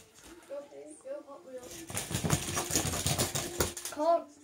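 Die-cast Hot Wheels monster trucks racing down an inflatable air mattress: from about halfway through, a dense run of clattering, scraping noise as the toy trucks roll and tumble. Quiet murmured words come first.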